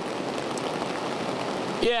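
Heavy rain falling on an umbrella and a flooded road: a steady hiss. A man says "yeah" near the end.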